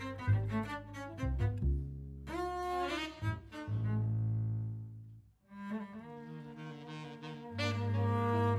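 Cello and double bass bowed together in free improvised jazz: a run of short notes, then long low sustained tones, with a brief near-silent break about five seconds in before the bowing resumes.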